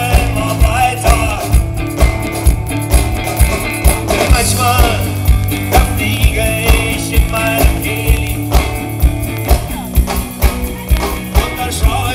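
Live rock band playing: electric guitars over a drum kit, with a steady beat of about two strokes a second.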